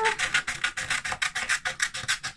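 Scissors cutting down the fold of a sheet of paper: a quick, even run of snips, about seven a second, with the paper rasping against the blades.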